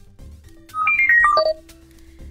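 A mobile phone's electronic tone as a call is placed: a quick descending run of about six bright notes, followed by one lower held note.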